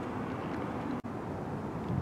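Steady, low outdoor background noise with no distinct event, dropping out for an instant about a second in.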